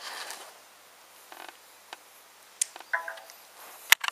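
Quiet handling sounds as a smartphone is unplugged from a laptop's USB cable: a few soft clicks and rustles, a short pitched blip about three seconds in, and a sharp click near the end.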